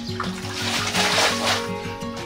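Water from a washing basin thrown out onto a concrete floor: a rushing splash from about half a second in, loudest around a second and a half, over background music.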